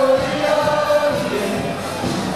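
Party music with a crowd of voices singing along, holding long notes.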